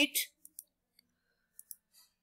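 A few short, faint clicks of a computer mouse, scattered over about a second and a half, as a presentation slide is advanced.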